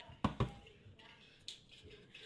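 Metal food cans knocking on a countertop as they are set down and picked up: two sharp knocks in quick succession, then a lighter one about a second later.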